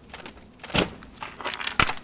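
Drawer of a stage props chest being pushed shut with a knock, then a sharp click near the end as the chest is locked.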